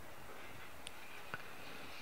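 Low, steady background hiss with two soft ticks, one about a second in and another shortly after.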